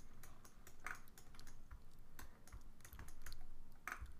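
Computer keyboard keys pressed in short, irregular taps, a scattering of separate clicks, as shortcut keys are used while editing a 3D mesh.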